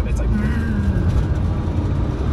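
Snyder ST600-C three-wheeler's rear-mounted 600cc twin-cylinder motorcycle engine, heard from inside the cabin on the move with the driver off the throttle: the revs hang and sink only slowly, over a steady low rumble of engine and road noise.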